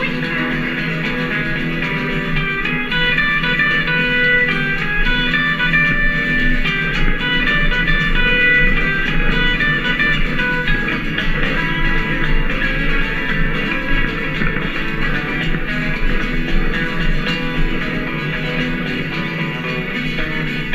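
Live country-rockabilly trio playing an instrumental break: an electric guitar picks a lead line of quick single notes over a strummed acoustic rhythm guitar and a plucked upright double bass, with no singing.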